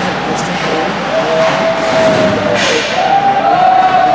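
Ice hockey rink noise: a loud wash of spectators with long, held, wavering calls, and sharp knocks of stick or puck on the boards, one a little under half a second in and a louder one about two and a half seconds in.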